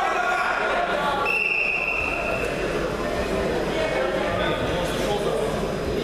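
Referee's whistle blown once, a steady high blast of about a second and a half starting about a second in, signalling the start of the wrestling bout. Spectator chatter fills the large hall throughout.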